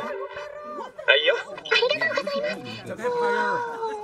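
Anime dialogue: a character's voice speaking Japanese, saying thanks ("Oh, whoops! Thanks!").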